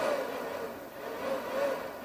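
Faint whir of a power inverter's cooling fan, dipping about a second in and then picking up again as it cycles on and off: the inverter is carrying only a light load, which is not much power pulling through it.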